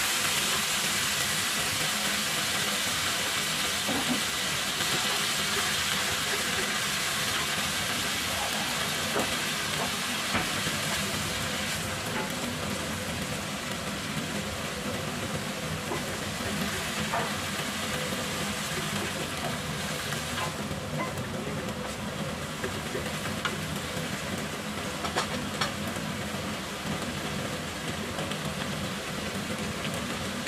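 Freshly added shredded cabbage sizzling in hot oil in a frying pan, a loud steady hiss that slowly dies down as the pan cools under the load of vegetables. Now and then a wooden spatula clicks and scrapes against the pan as the cabbage is tossed.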